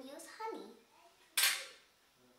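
One sharp clink of tableware about a second and a half in, as a small glass bowl of syrup is picked up off the table by the plate, after a faint child's voice at the start.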